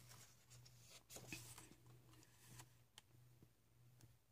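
Near silence with a few faint rustles of paper as the pages of a hardcover book are turned by hand, the largest about a second in, over a low steady hum.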